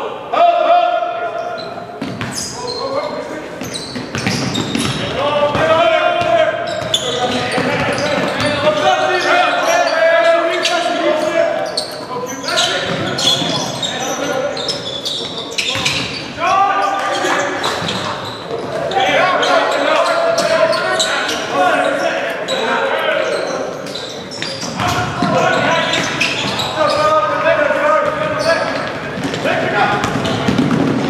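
A basketball bouncing on a hardwood gym floor during live play, with voices calling out across the court throughout.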